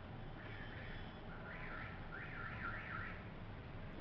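A faint, high warbling alarm tone sweeping up and down about five times in quick succession, over steady low hiss.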